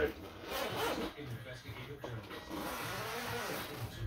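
Zipper of a padded soft-shell guitar case being pulled open along its length, a continuous rasping with a few brief catches.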